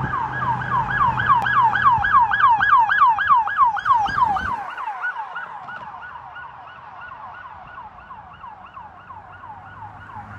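Electronic emergency siren on a 2015 Dodge Durango EMS response SUV, sounding a fast yelp of about four sweeps a second. It is loudest a few seconds in as the vehicle goes by, with road rumble, then fades steadily as it drives away.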